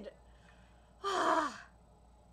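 A woman's short, breathy sigh that falls in pitch, about a second in.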